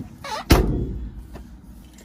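Exterior storage bin door on a motorhome slammed shut: one loud bang about half a second in, followed by a faint click a little under a second later.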